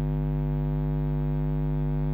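Steady electrical hum, a low buzz with many evenly spaced overtones, typical of mains hum picked up by the recording.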